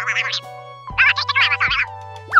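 Background music with a steady bass line and held notes, overlaid by two bursts of a high, rapidly warbling sound effect: a short one at the start and a longer one of about a second midway.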